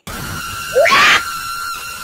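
A horror jumpscare sound effect. A loud, harsh screech cuts in suddenly with a steady high whine running through it, and a scream peaks about a second in.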